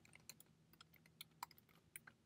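Faint computer keyboard typing: a run of quick, irregular keystrokes.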